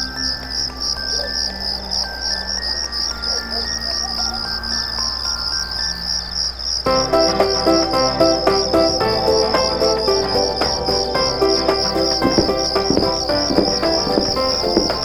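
Crickets chirping steadily as a sound effect, a fast high pulsing, over background music that starts with sparse notes and becomes fuller and louder about seven seconds in.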